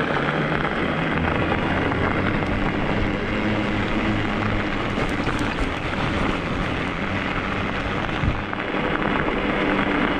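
Studded 4.0-inch 45North fat tires rolling on wet asphalt during an e-bike ride: a steady hum and hiss of tire noise that keeps on without a break.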